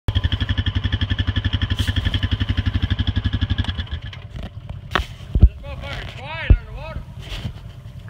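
Off-road vehicle engine running with a fast, even throb for about the first four seconds, then fading out. After that come a few sharp knocks and a voice calling out.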